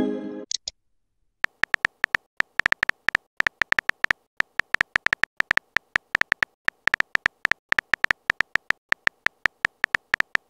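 Simulated phone-keyboard typing clicks, short sharp taps at about five a second, starting about a second and a half in and running on. At the very start a message chime fades out.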